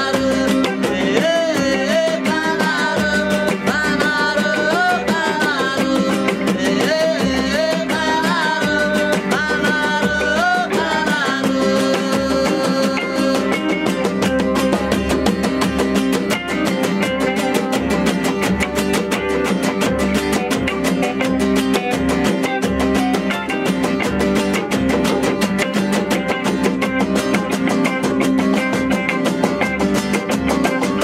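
A man singing a melody over two acoustic guitars; the voice stops about twelve seconds in and the two guitars play on alone.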